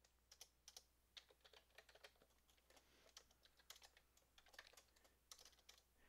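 Faint computer keyboard typing: a run of irregular, quick key clicks as a line of text is entered.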